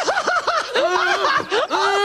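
Loud, high-pitched comic laughter in a quick run of rising-and-falling 'ha' pulses, about five a second.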